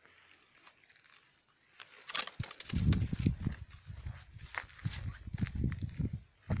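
Dry twigs and leaves rustling and crackling as the phone pushes through dry scrub, starting about two seconds in. Irregular low rumbles of handling or wind on the microphone run underneath.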